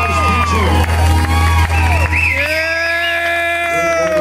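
A live country band holding the final chord of a song, with a steady bass note underneath and a wavering high note about two seconds in, while the crowd whoops and cheers.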